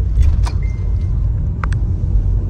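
Car cabin rumble while driving, a steady low drone from the road and engine, with a couple of short clicks.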